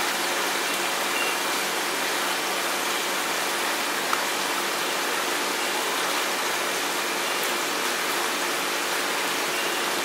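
Steady rush of running water in a shallow platypus pool, with a faint steady hum beneath it and one small tick about four seconds in.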